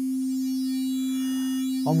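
SkyDust 3D software synthesizer's sine-wave oscillator holding one steady note through a bit crusher, which adds a thin layer of faint high overtones over the pure tone: an eight-bit kind of sound.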